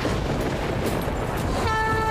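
Battle-scene sound effects from a TV serial's soundtrack: a dense rushing rumble, then, near the end, a steady horn-like tone with several overtones starts and holds.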